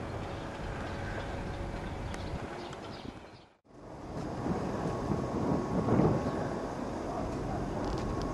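Steady outdoor rumbling noise, broken off by an edit cut about three and a half seconds in; after the cut it swells to its loudest about six seconds in.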